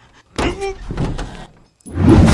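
Sound effects from an animated film clip: a car and car door being handled, in irregular noisy bursts beginning about half a second in.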